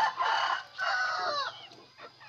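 Rooster crowing: one loud crow in two parts, the second ending in a falling tail about a second and a half in.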